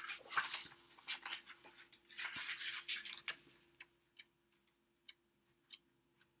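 Glossy photo booklet being leafed through by hand: paper rustling with small clicks, the longest rustle about two seconds in, then a few faint ticks near the end.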